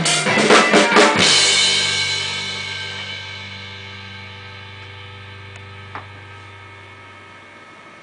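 Drum kit ending a song: a quick run of hits in the first second or so, then the last strike rings out and slowly fades away.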